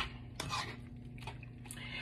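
A metal utensil stirring sliced beef in a frying pan: a sharp click at the start and another light one shortly after, with faint scraping over a low steady hum.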